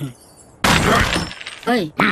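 A sudden loud crash sound effect, like something shattering, about half a second in, followed by a short voiced cry with a rising and falling pitch from a cartoon character.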